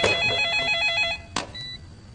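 Telephone's electronic ringer warbling in a fast trill. It stops a little past a second in, and a sharp click and a short beep follow, as the phone is answered.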